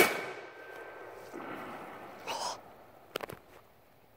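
A handheld cannon fires a single loud bang right at the start, its report echoing and fading over about a second. A fainter burst follows about two and a half seconds in, and a few sharp clicks come near the end.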